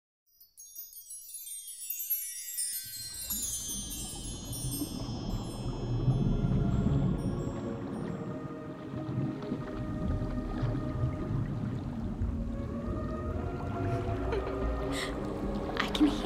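Instrumental opening of an undersea-themed soundscape: a shimmering cascade of chimes falls in pitch over the first few seconds, then gives way to a low rumbling wash with soft sustained tones.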